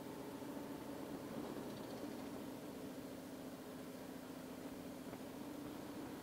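Harley-Davidson Street Glide's V-twin engine running as the motorcycle rides along: a steady low drone that rises slightly in pitch about two seconds in, over a steady hiss of wind.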